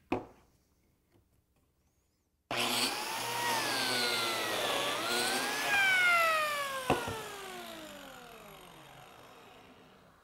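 A click at the very start. About two and a half seconds in, a biscuit joiner's motor switches on and runs with a whine that dips in pitch as its blade cuts a biscuit slot in the board. It is then switched off, with a sharp click, and winds down with a falling whine.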